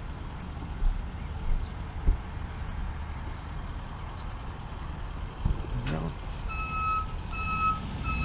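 A vehicle's reversing alarm beeping in an even pulse, about one and a half beeps a second, starting roughly two-thirds of the way in, over a low steady rumble of engines and traffic.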